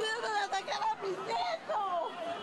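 Several raised, high-pitched voices calling out over a background of crowd chatter, people shouting in alarm as they run.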